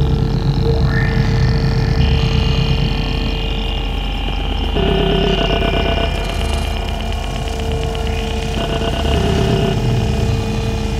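Harsh experimental noise music: dense layered electronic noise over a low pulsing drone, with sustained tones that shift abruptly about 2, 5 and 9 seconds in.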